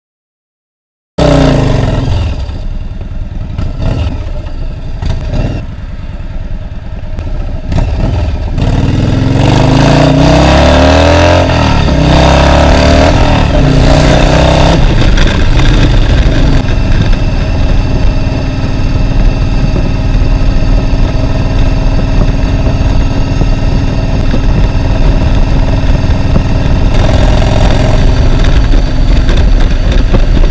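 Cruiser motorcycle engine under way, ridden with the camera mounted on the bike. After a silent first second it runs loud; between about 8 and 15 seconds in, its revs rise and fall through several gear changes as it accelerates, then it settles into a steady cruise.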